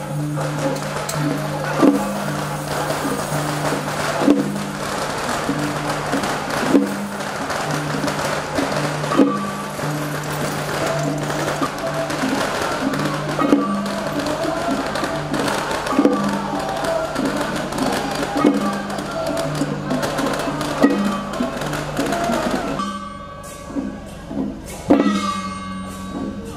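Temple procession band music: drums and percussion over a sustained melodic line, with a heavy stroke about every two and a half seconds and quicker beats between. The music thins out about 23 seconds in.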